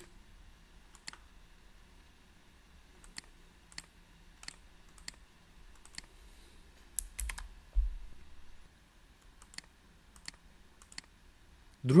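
About a dozen separate, irregularly spaced clicks from a computer mouse and keyboard, with a quick cluster about seven seconds in.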